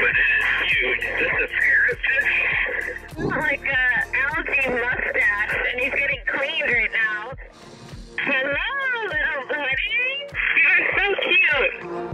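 A diver's voice speaking underwater, thin and muffled with the high end cut off, over background music.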